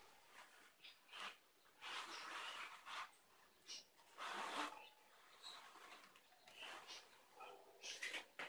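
Near silence, with faint, scattered rustles and scrapes as hands handle a corrugated cardboard kite template and its bamboo sticks. The strongest comes about halfway through.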